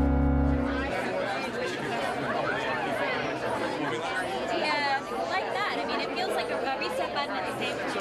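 A sustained chord of title music with heavy bass cuts off about a second in. Then many voices chatter at once, a crowd talking over one another in a busy room.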